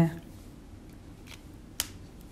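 A single sharp click near the end, over quiet room tone, with a fainter click shortly before it.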